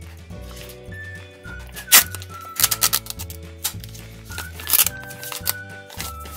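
A sealed lid being peeled off a plastic toy cup, crinkling and tearing in short bursts about two seconds in, around three seconds and again near five seconds, over upbeat background music with a repeating bass line.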